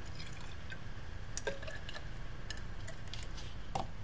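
Distilled water poured from a glass beaker into a plastic graduated cylinder: a faint, steady trickle with a few small ticks.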